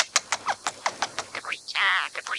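Scaly-breasted munia singing: a rapid run of short clicking notes, about seven a second, then a longer drawn-out nasal note beginning near the end.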